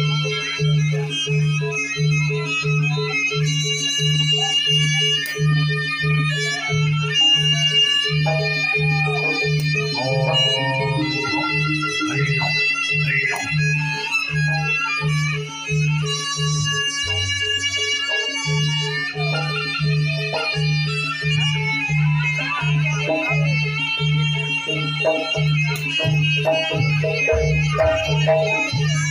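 Traditional East Javanese performance music: a steady drum beat about two and a half strokes a second under a reedy wind melody. The beat drops out for a moment past the middle, then comes back.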